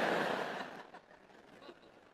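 Audience laughing after a punchline. The laughter fades away over about the first second, and after that it is near silence.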